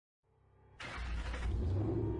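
Logo intro sound effect: a faint swelling sound, then a sudden deep rumble with hiss that hits just under a second in and holds.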